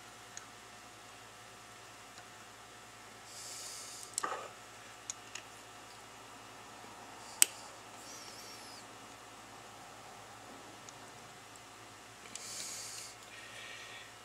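Small metal clicks and taps from a mechanical fuel pump's rocker-arm linkage and pin being worked by hand, with one sharp click about seven seconds in. Two short soft hisses, near the start and near the end.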